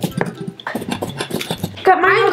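Plastic squeeze bottle of mustard sputtering and crackling in irregular pops as it is squeezed out onto a pizza.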